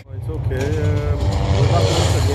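Voices over a steady low rumble.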